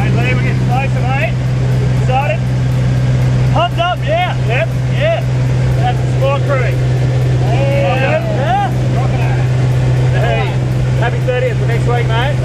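Steady drone of a single-engine light aircraft's engine heard inside the small cabin in flight, with voices talking over it.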